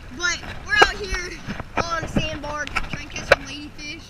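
A boy talking in a high voice, with two sharp knocks about a second in and near the end.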